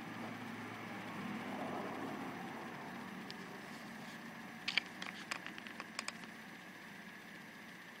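Faint handling noise from a hand holding a camera lens: a low hiss with a soft rustle, then a short run of light clicks about five seconds in.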